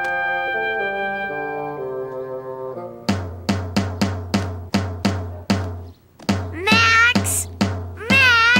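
Drums played with a drumstick: after a short falling run of musical notes, steady strikes at about three to four a second begin, pause briefly, then resume with a sliding vocal cry over the last beats.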